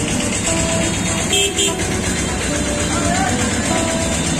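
Busy street din with traffic, short vehicle horn toots at different pitches, and background voices.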